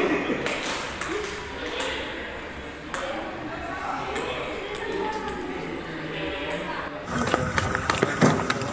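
Table-tennis ball knocked back and forth with rubber paddles: a string of sharp, irregularly spaced clicks, roughly one every half second to second, over background talk. Music comes in near the end.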